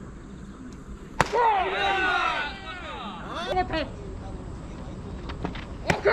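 A pitched baseball popping once into the catcher's mitt about a second in, followed by players' voices calling out on the field.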